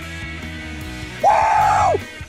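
Background music with a steady beat; about a second in, a man lets out one long, loud celebratory yell that drops in pitch as it ends.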